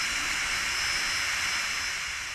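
Air hissing steadily through the valve of an inflatable sleeping pad, with a faint high whistle over the hiss.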